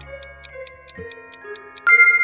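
Clock ticking quickly, about five ticks a second, over soft background music, like a quiz countdown timer. A loud, bright bell-like chime sounds near the end.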